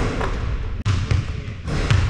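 A basketball bouncing on a hardwood gym floor, a few separate bounces.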